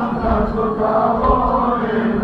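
A group of men chanting a mourning lament together in unison, with low thuds recurring about twice a second in time with the chant, typical of matam chest-beating.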